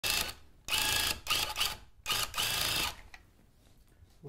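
Handheld electric rug-tufting gun punching yarn through stretched backing cloth, running in four short buzzing bursts, the last and longest just under a second, stopping about three seconds in.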